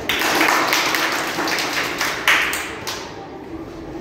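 A small audience clapping, a dense patter of claps that fades out after about three seconds.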